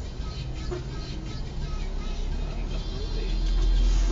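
Low engine rumble of city traffic that swells toward the end as a city bus draws alongside close by, under quiet background music.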